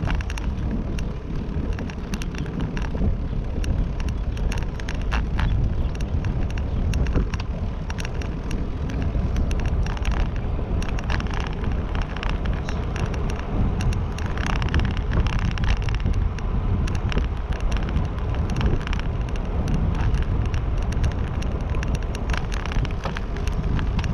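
Wind buffeting the microphone on a moving ride: a steady low rumble with many small clicks and rattles throughout.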